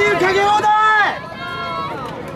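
A man's loud, drawn-out calls, a festival food-stall vendor hawking to passers-by. The calls are loud for about a second, then a fainter held call follows.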